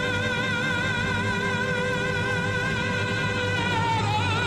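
A boy's unbroken singing voice holding one long high note with a steady vibrato, moving to a new note near the end, over musical accompaniment. It is an old camcorder recording of a school performance.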